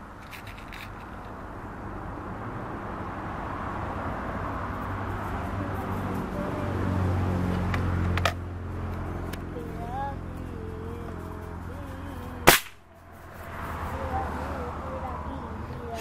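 A single shot from a Hatsan 125 Sniper Vortex gas-ram break-barrel air rifle, a sharp crack about three-quarters of the way through and the loudest sound here. The rifle has been degreased and no longer diesels. Under it a low engine-like hum builds up and holds steady, with a smaller click a little over halfway.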